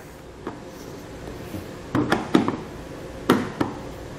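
Flathead screwdriver clicking and scraping against a plastic stake-pocket cap on a truck bed rail as it is worked underneath to pry the cap out. A few sharp clicks, the loudest clustered about two seconds and three seconds in, over faint room hum.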